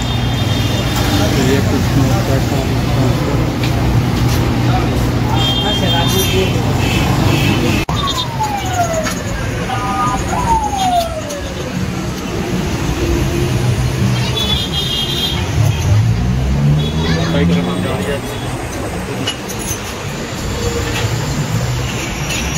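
Busy street and workshop ambience: background voices over a steady rumble of road traffic, with two tones falling in pitch about eight and ten seconds in.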